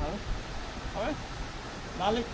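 A man's voice speaking a brief word in Cantonese about a second in, over steady outdoor hiss and low rumble.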